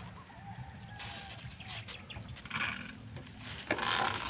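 Manual lever-pump knapsack sprayer being worked while spraying a rice crop: faint squeaks from the pump mechanism early on, then short rustling hisses of plants and spray, twice.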